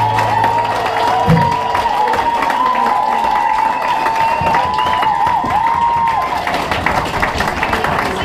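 A final guitar chord rings and stops about a second in. An audience then applauds and cheers, with whoops over the clapping that thin out near the end.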